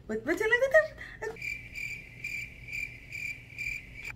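Cricket chirping, a steady high trill pulsing about twice a second, starting a second or so in and cutting off abruptly at an edit: a stock sound effect used as the classic gag for an awkward silence.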